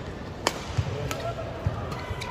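Badminton rally: sharp racket strikes on a shuttlecock, the loudest about half a second in and a lighter one a little after a second, with thumps of court shoes on the floor.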